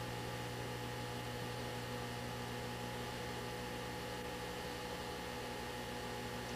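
Steady electrical mains hum with an even background hiss on an old videotape soundtrack, unchanging throughout.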